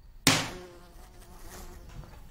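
A housefly buzzing, then one loud, sharp smack about a quarter second in, a swat at the fly, dying away over about half a second.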